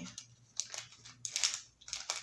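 Someone eating a piece of candy: a handful of short crackly sounds of a wrapper crinkling and candy being bitten and chewed.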